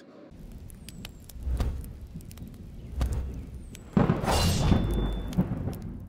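Deep rumble with a few sharp thuds, then a loud whooshing swell about four seconds in that fades away just before the end, like a thunder-style transition effect.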